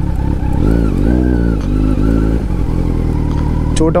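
Kawasaki Z900 inline-four engine with the bike ridden slowly through mud: the revs rise and fall in two swells in the first half, then settle to a steady low-speed run.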